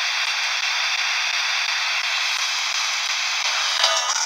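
Steady radio static hissing from a handheld spirit-box radio's small speaker, with a short louder blip near the end.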